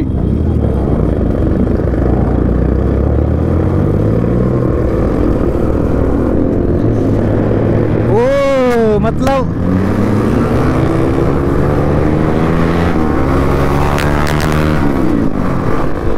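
Yamaha R15 V3's single-cylinder engine running under way, its pitch climbing and dropping back in steps as it accelerates through the gears. About eight seconds in, a brief loud wavering sound swoops down and back up over it.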